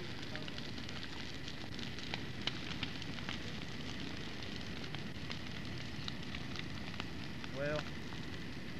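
Bonfire burning with a steady rushing noise and frequent sharp crackles and pops from the wood. A brief voice sounds just before the end.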